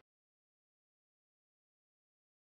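Complete silence: the sound track drops out entirely, with no room tone.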